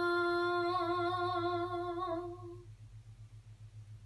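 A young girl's voice holding the song's long final note unaccompanied: steady at first, then wavering with vibrato, and fading out about two and a half seconds in. A faint low hum remains under it.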